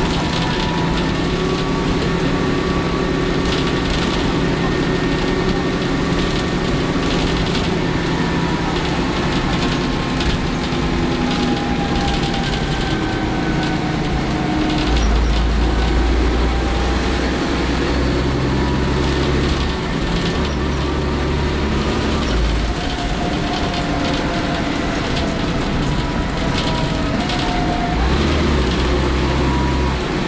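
Cabin sound of a Leyland Olympian double-decker bus under way: its Cummins LT10 diesel engine and ZF Ecomat automatic gearbox run continuously, their note rising and falling in pitch as the bus moves, while the low rumble shifts up and down in steps. Light rattles come from the body and fittings.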